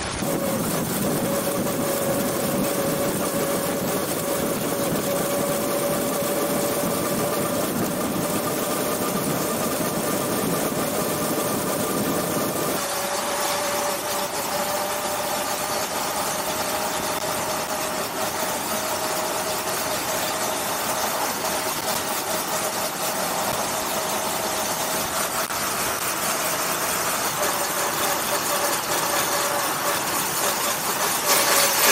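A 1904 Panhard et Levassor's 3.8-litre four-cylinder engine and drive running steadily at road speed, with a steady high whine held throughout. About 13 seconds in the sound turns abruptly thinner as the pickup point moves from beside the chain-driven rear wheel to the front of the car.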